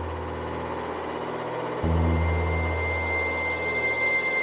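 Ambient electronic synthesizer music: a deep bass note sounds about halfway through and fades slowly, over a hazy pad, while a thin, steady high tone comes in at about the same point.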